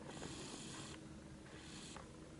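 Faint breathing close to the microphone: two soft breaths, the first about a second long, the second near the end.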